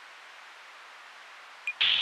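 Faint steady hiss of a blank recording, with a short high beep near the end. A louder sound cuts in abruptly just before the end.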